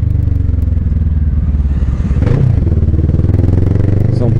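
Motorcycle engine running at low, steady revs as the bike creeps between lanes of stopped freeway traffic, its note swelling briefly a little past halfway.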